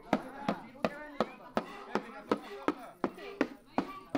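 Steady percussion beat for a dance: sharp, even knocks about two and a half times a second.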